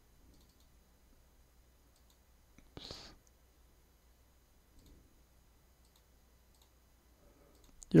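A few faint computer mouse clicks, with a short hiss about three seconds in, over a near-quiet room.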